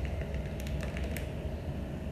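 Plastic instant-ramen packets crinkling and crackling lightly as they are handled, a few short crackles over a steady low hum.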